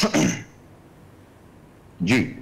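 A man briefly clears his throat, then a pause of about a second and a half with only faint room tone.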